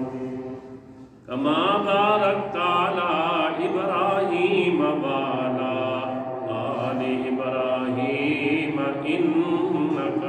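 A man's voice chanting a melodic recitation into a microphone with long, drawn-out held notes. It dips into a brief pause about a second in, then resumes loudly.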